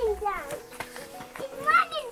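A young child's high-pitched voice, with short rising and falling calls, over background music.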